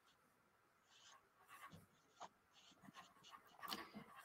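Near silence, with a few faint short scratches of a marker drawing on paper.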